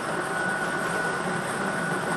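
Lottery ball draw machine's air blower running, a steady noise with a faint high whine.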